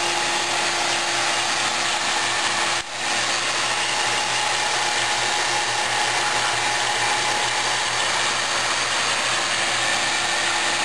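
Electric rotary-vane vacuum pump running steadily at full vacuum, pulling about 29 to 30 inches of mercury to draw volatiles out of the resin. The level dips briefly about three seconds in.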